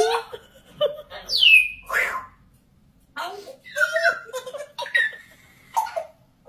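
African grey parrot vocalising in a string of short, speech-like calls, with a loud falling whistle about a second and a half in: the chatter that the owner takes for insults after being told no.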